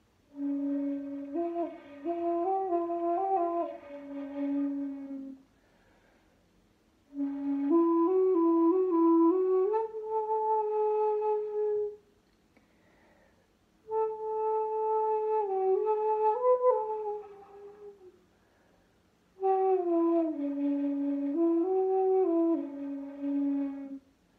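Shakuhachi, the end-blown bamboo flute, played in four short phrases of a few held notes each, moving in small steps, with pauses of a second or two between phrases.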